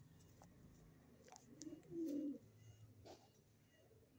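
A pigeon cooing once, a low coo lasting about a second that begins around a second and a half in. A few faint clicks come before and after it.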